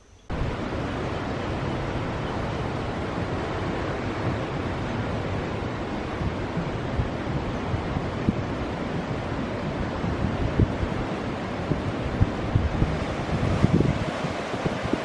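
Ocean surf washing in over a black lava-rock shoreline, a steady rush of water with irregular low buffeting from wind on the microphone.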